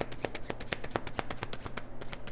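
Tarot cards being shuffled by hand: a rapid, even patter of card clicks, about a dozen a second.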